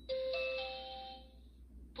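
Electric rice cooker's electronic chime as a cooking mode is selected: a short jingle of a few steady beeping tones that come in one after another and ring together, fading out about a second and a half in.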